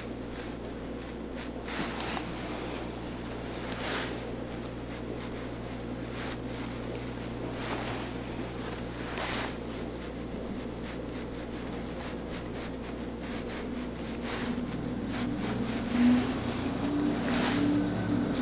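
Steady low room hum with a few faint, brief clicks scattered through it.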